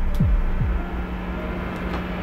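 Heartbeat sound effect in a trailer soundtrack: two deep thuds less than half a second apart, each dropping in pitch, followed by a steady low hum.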